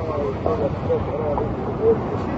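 Roadside field sound: people talking under a steady rumbling noise outdoors.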